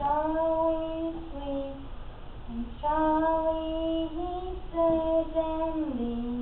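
A young woman singing alone and unaccompanied, in long held notes that slide from one pitch to the next, in two phrases with a short breath about two seconds in.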